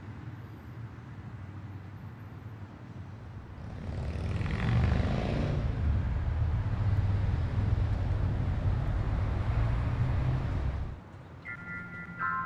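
Low rumble of a passing vehicle in street traffic. It swells about four seconds in and cuts off suddenly about a second before the end, where soft bell-like music tones begin.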